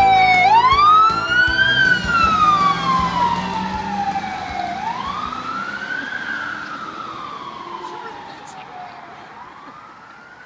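Police siren on a Ford Crown Victoria police car sounding a slow wail, rising and falling about every four and a half seconds, fading steadily as the car drives away.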